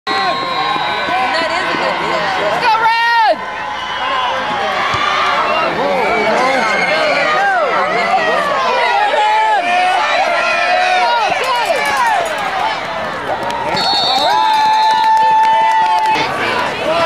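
Football crowd in the stands shouting and cheering, many voices overlapping. A brief sliding call comes about three seconds in, and a long steady held tone sounds near the end.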